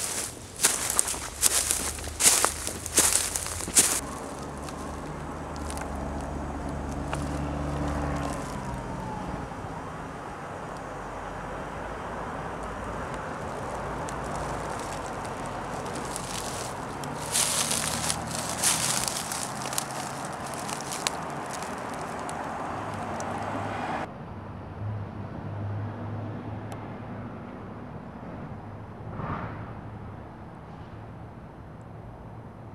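Footsteps crunching through dry leaves, grass and twigs: a run of sharp crackles at the start and another more than halfway through, over a steady low rumble. About four-fifths through the sound cuts suddenly to a quieter background with a low hum.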